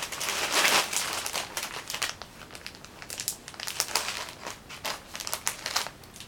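Packaging crinkling as it is handled, dense for the first two seconds, then in sparser crackles.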